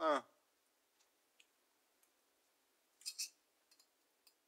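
A short grunted "uh" from a man's voice, then near quiet with two faint, sharp clicks close together about three seconds in.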